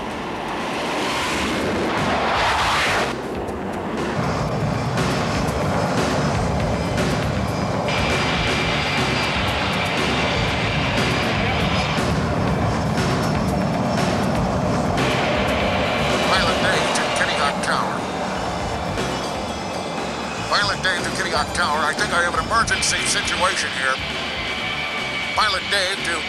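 Airplane engine noise running continuously under background music.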